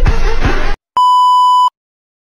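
Music cuts off abruptly a little under a second in. After a brief gap, a single steady electronic bleep tone, the kind used to censor words, sounds for under a second and stops sharply.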